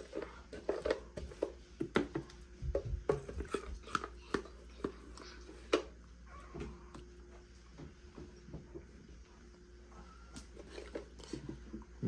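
A spoon scraping and tapping thick puppy mush out of a plastic blender jar onto a plate: irregular scrapes, knocks and wet squelches, busiest in the first half and sparser later.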